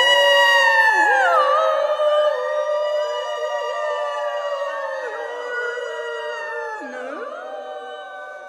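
Several female voices sing wordless long notes together, overlapping and sliding slowly up and down in pitch. They fade gradually toward the end.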